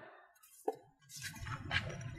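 A cleaver cuts down through soft grilled ray meat onto the metal tray beneath: one short clink about two-thirds of a second in, then a faint scraping over the last second.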